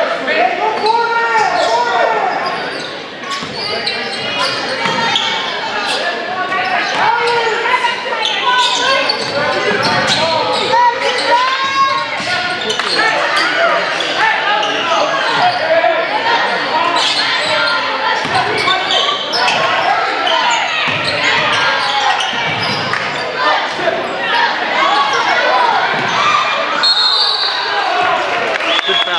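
Basketball being dribbled on a hardwood court during live play, with players' shouts and voices echoing around a large gym.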